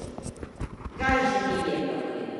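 A quick, uneven run of soft low knocks for about a second, then a woman's voice speaking.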